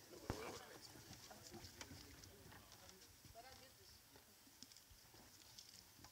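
Near silence: faint distant voices, with a single light knock shortly after the start.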